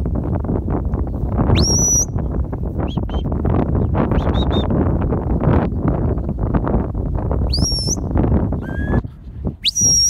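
Shepherd's whistle commands to a working sheepdog: three sharp whistles that rise and then hold high, about a second and a half in, at about seven and a half seconds, and just before the end. A few shorter, lower whistle notes fall between them. Under them a loud, steady rushing noise drops away about a second before the end.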